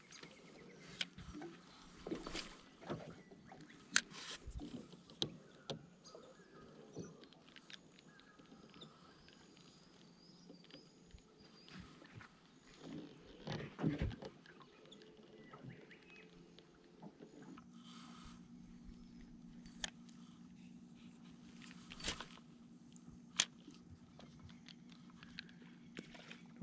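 Faint, scattered clicks and knocks from a fishing rod and reel being handled and wound, with a louder cluster of knocks about halfway through.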